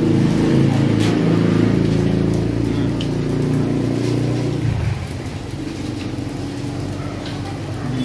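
A motor vehicle's engine running steadily with a low hum. It drops to a quieter level a little before five seconds in.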